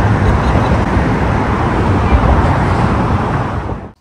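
Steady noise of road traffic on the Brooklyn Bridge, heavy in the low rumble, heard from the pedestrian walkway; it cuts off suddenly near the end.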